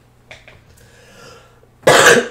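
A person coughing once, loudly and suddenly, near the end: a mighty cough.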